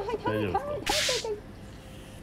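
A woman crying out in pain, a high, wavering 'itai itai' (ouch, ouch), under firm pressure on her upper back. About a second in, a short sharp hissing burst cuts across the cries.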